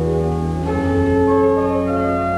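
Romsey Abbey's pipe organ playing slow sustained chords, moving to a new chord under a second in.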